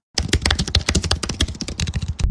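Computer-keyboard typing sound effect: a rapid, uneven run of keystroke clicks as the title text is typed onto the screen.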